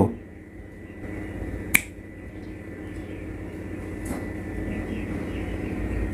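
Low rumbling sound effect that slowly grows louder, with one sharp click about two seconds in and a fainter click around four seconds.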